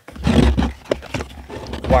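Plastic ammo box lid being unlatched and swung open by hand: a few sharp plastic clicks and knocks in the first second or so, over a low rumble.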